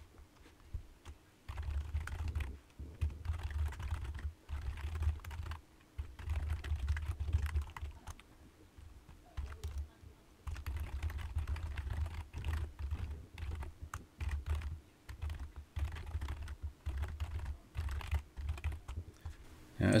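Typing on a computer keyboard: runs of rapid keystrokes broken by short pauses.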